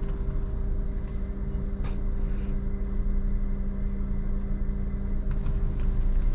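Honda Brio's petrol engine idling steadily, heard from inside the cabin, while the car rolls slowly backward with the clutch pedal held fully down. A faint click about two seconds in.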